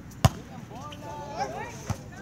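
A volleyball struck hard by a player's hand about a quarter second in, a single sharp slap that is the loudest sound. Players' shouted calls follow, and a softer knock comes near the end.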